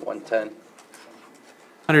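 A man's short, soft murmured hesitation sounds at the start, a quiet pause with room tone, then his speech picks up again just before the end.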